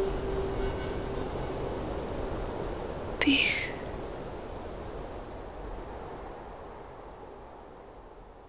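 Whispered voice over a breathy, hissing backdrop that slowly fades out. A held low tone dies away about a second in, and a single sharp whispered "tich" with a falling hiss comes about three seconds in.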